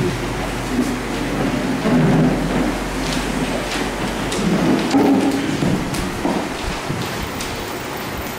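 Handheld microphone being picked up and moved: low rumbles, thumps and a few clicks of handling noise over a steady hiss.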